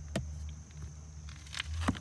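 A couple of light clicks and taps as a hand handles a car's rear door trim and seat back, over a low steady hum that gets a little stronger near the end.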